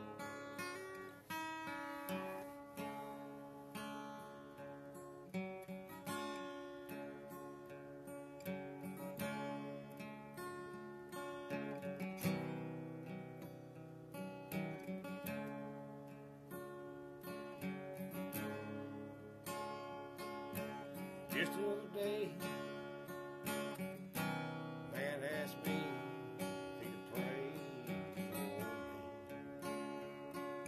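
Steel-string acoustic guitar strummed and picked in a slow chord progression, beginning suddenly right at the start.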